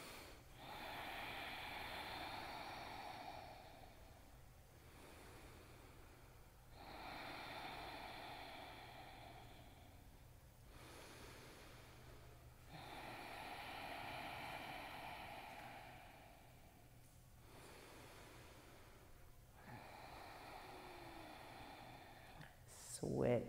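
Slow, deep ujjayi breathing in and out through the nose, about three full breaths, each inhale and exhale lasting a few seconds.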